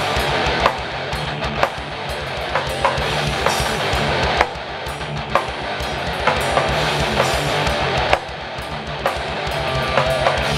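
Heavy metal band playing live with no vocals: distorted electric guitars over fast, steady bass-drum pulses, with sharp drum hits about once a second. The band drops back briefly twice, a little under halfway and near the end.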